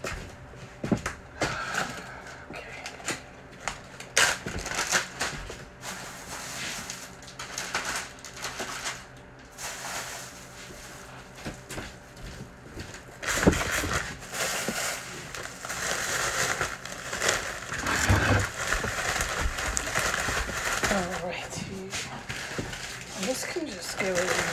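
Kitchen handling noises: scattered knocks and clicks at first, then, from a little past halfway, louder steady crinkling of foil and plastic wrapping being handled.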